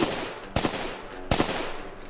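Gunshots fired one at a time: one right at the start, then two more about three-quarters of a second apart, each sharp crack trailing off briefly.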